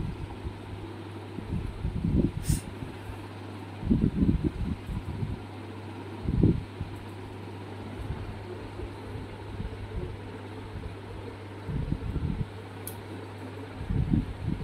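Steady mechanical room noise like a running fan, with a constant low hum, broken by a few dull low bumps.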